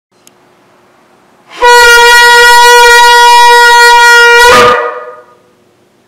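Long spiralled shofar blown in one long blast at a steady pitch, starting about a second and a half in and held for about three seconds before it breaks up and dies away.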